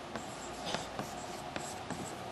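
Chalk writing on a blackboard: a handful of short, faint taps and scrapes of the chalk stick as strokes are written.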